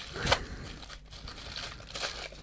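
Bubble wrap crinkling in irregular crackles as hands pull and twist at it, trying to get it open.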